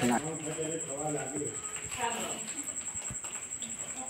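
A faint, low voice murmuring, with a steady high-pitched whine behind it and a soft thump about three seconds in.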